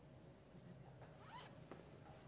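Near silence: faint room tone with light handling noise and one short zip about a second and a half in, as a laptop bag and power cord are handled.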